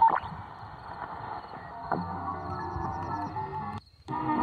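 Tecsun PL-680 shortwave receiver in single-sideband (USB) mode being tuned down through the 5 MHz band: hiss and static with whistles sliding in pitch as the tuning passes signals, then weak steady tones of another signal from about halfway. The audio drops out briefly just before the end.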